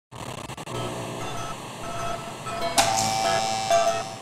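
Electronic logo-intro sound effect: buzzing, glitchy static threaded with short electronic tones. A sudden hit comes a little under three seconds in, followed by a held ringing tone.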